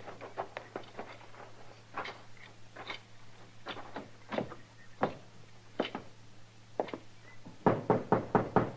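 Radio-drama sound effect of footsteps walking slowly, about one step a second. A quick run of knocks on a door starts near the end. A faint steady hum lies under the old recording.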